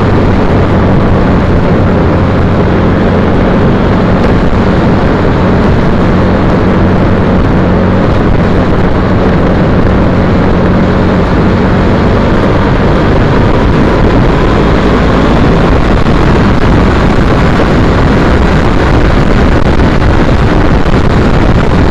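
Loud wind rushing over the microphone of a camera on a moving 2010 Triumph Bonneville T100, with the bike's air-cooled parallel-twin engine holding a steady low hum underneath; the hum becomes less distinct about twelve seconds in.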